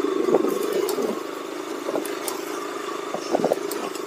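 KTM sport bike's single-cylinder engine running steadily at a low cruising speed, with scattered knocks and rattles from riding over a rough, broken dirt road.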